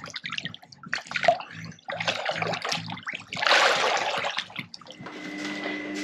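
Water sloshing and splashing in a swimming pool as a child moves in it, then a loud splash lasting over a second, about three and a half seconds in, as he pushes off into the water. A faint steady hum follows near the end.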